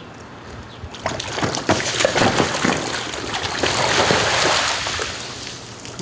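Water from a garden hose spraying and splashing onto the pavement, with an irregular spatter that builds after about a second and eases off toward the end.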